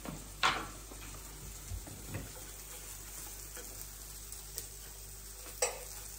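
Faint steady sizzle of bacon-and-mushroom fritters frying in a pan, with two brief louder noises as the food in the pan is handled, about half a second in and near the end.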